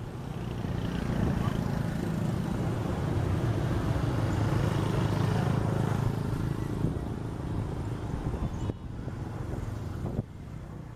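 A motor vehicle's engine running close by on the road, building over the first seconds, loudest in the middle and easing off near the end.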